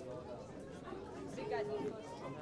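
A crowd of people talking at once in a large hall: a babble of overlapping conversation, with one voice standing out louder about a second and a half in.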